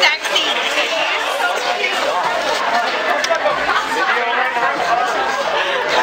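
Several people talking at once in a steady chatter of a party crowd, with no one voice clear enough to follow.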